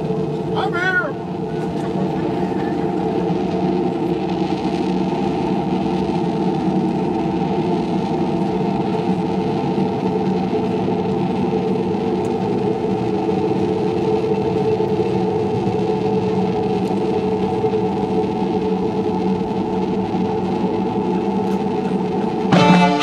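A sustained chord held steady without change, with a brief gliding tone about a second in.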